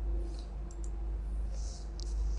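A few faint computer mouse clicks in the first second, over a steady low electrical hum.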